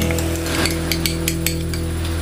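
A metal spoon scraping and tapping a small glass dish to get the last of the oyster sauce out, a quick run of light clicks in the middle. A steady low hum runs underneath.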